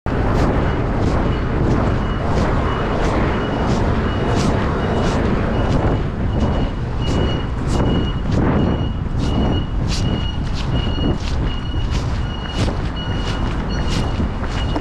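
Walking with a body-worn camera: footsteps and jacket fabric rubbing against the microphone about twice a second, over a loud rumble of street traffic. From about a second in, a high electronic beep repeats about twice a second, loudest around the middle.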